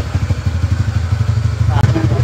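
Motor scooter's small engine idling, a steady low putter.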